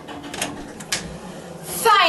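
Bathroom door opening: two sharp latch-and-handle clicks about half a second apart, then a woman's voice starts near the end.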